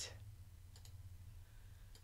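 A few faint computer mouse clicks over a low steady hum.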